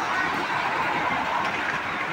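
Steady city street noise: road traffic, with a minivan driving past.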